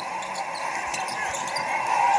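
A basketball being dribbled on a hardwood court over steady arena background noise, heard through a television broadcast's speakers.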